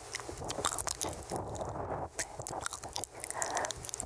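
Unintelligible whispering right up against a microphone, made up of soft breathy bursts and dense, small, wet mouth clicks and lip smacks.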